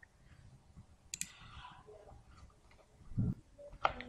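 Computer mouse clicking: a sharp click about a second in and another just before the end, with a few fainter ticks. A louder low thump comes a little after three seconds.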